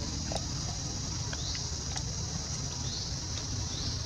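Steady, shrill insect chorus with a short rising chirp about once a second, over a low rumble and a few faint clicks.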